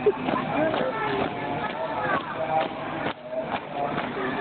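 A squad marching in step on a concrete court, feet striking the ground together about twice a second, under the chatter of many spectators' voices.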